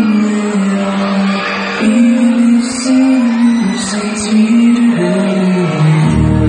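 Live concert music played loud through the PA, with a male singer holding long notes that shift in pitch every second or so.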